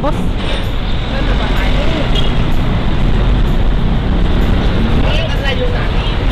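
Heavy road traffic with a container truck driving past close by: a loud, steady low engine and tyre noise.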